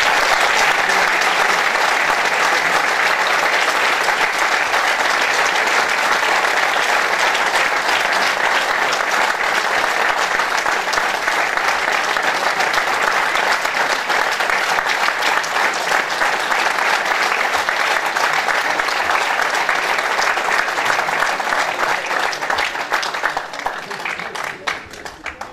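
Theatre audience and cast applauding: many hands clapping in a dense, steady wash that thins out near the end.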